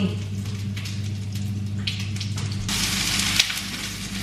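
Food sizzling in a frying pan on a hob. The sizzle gets much louder and brighter about two-thirds of the way in.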